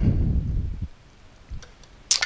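Steeped tea draining from the infuser of a press-button glass teapot into the pot below, a low gurgle that dies away within the first second, followed by a few faint clicks.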